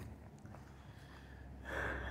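Quiet pause with faint low background noise, then a soft breath drawn in near the end.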